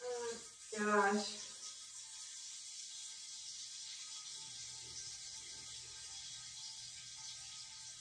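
A short laugh, then a steady, faint hiss of running water in a small bathroom.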